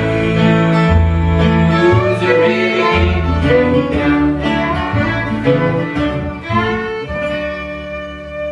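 Fiddle, acoustic guitar and upright bass playing an instrumental country-blues passage with no vocals, with the fiddle carrying the melody over strummed guitar and plucked bass notes. About seven seconds in they land on a long held final chord that rings out and fades.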